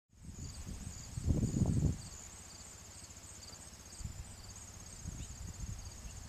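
Insects chirping in a steady high pulsing trill, with a second, shorter chirp repeating about twice a second. A low rumble is loudest from about one to two seconds in.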